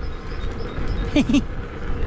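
A man laughing in a couple of short bursts about a second in, over a steady low rumble of wind on the microphone as he rides.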